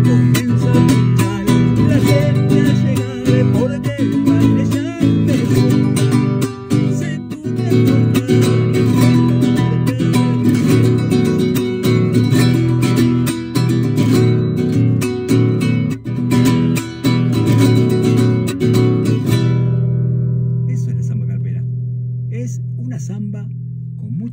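Nylon-string classical guitar strummed in a fast zamba carpera rhythm, full of repiques. The strumming stops about 19 seconds in and the last chord rings on and fades.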